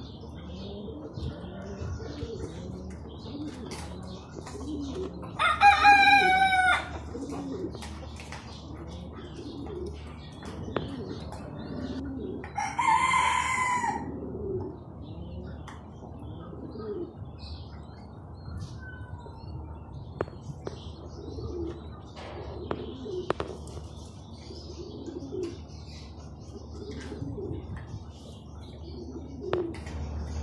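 Domestic pigeons cooing steadily, with faint chirps over them. Two loud, drawn-out calls from another bird stand out, about six and thirteen seconds in.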